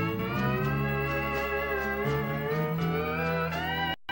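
Steel guitar playing an instrumental break in a country waltz: sustained chords slide slowly in pitch under the bar over low bass notes. The sound drops out briefly at the very end.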